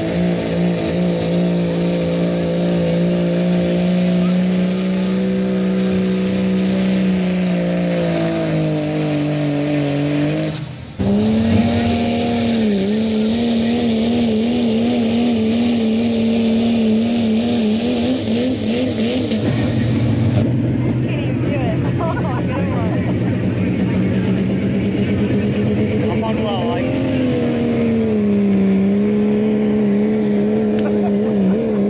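Turbo-diesel pickup trucks pulling a sled at full throttle. The first engine's note holds steady, then sinks lower over a few seconds as the load drags it down. After a short break a second diesel truck runs hard with its note wavering up and down, a faint high whine over both.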